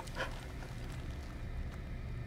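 Low, steady rumble of background tone, with one brief faint noise about a quarter second in.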